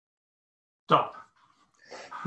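Speech only: silence on the call line, then a man says a single short "So," about a second in.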